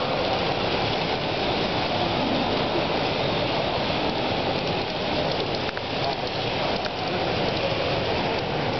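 Steady, even din of a large, busy hall, with no clear voices standing out.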